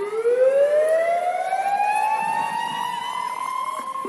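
A siren winding up: one long, loud wail whose pitch climbs slowly and steadily through the whole four seconds.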